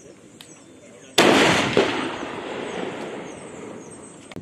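A single sniper rifle shot about a second in, its sharp report followed by a long echo rolling away over the next two seconds or so.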